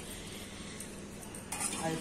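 Low steady hiss with a hum under it from the pan of just-boiled green peas on an induction cooktop. A light metallic clink comes about one and a half seconds in, as a steel plate is brought to the pan.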